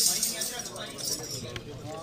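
Loose metal clinks from the jingles of a chimta, the Punjabi steel-tongs instrument, heard over people's voices.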